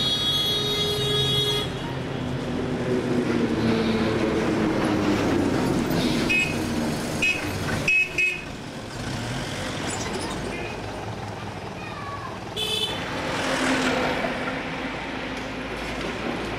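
Street traffic noise: a vehicle horn sounding at the start and again briefly near the end, with a few short high toots in between, over a steady din of engines and voices.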